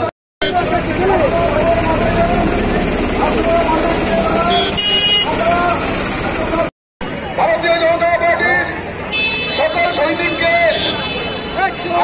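A street rally crowd: many men's voices talking and calling out over one another, with a brief vehicle horn toot about five seconds in. The sound drops out completely twice for a moment, near the start and just before seven seconds, where the footage is cut.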